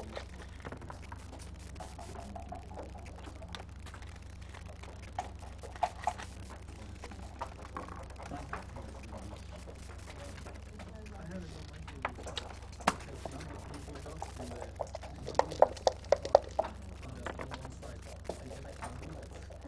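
Sharp clicks of backgammon checkers being set down on the board, then a quick run of rattling clicks near the end as dice are shaken in a dice cup and rolled onto the board. A steady low hum lies under it all.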